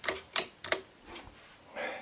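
Wall light switch flicked on and off, three sharp clicks within the first second.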